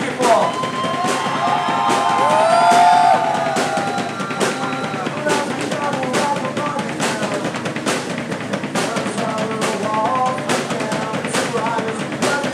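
Metal band playing live: distorted electric guitar, bass and a drum kit keeping a steady beat, with the vocalist on the microphone.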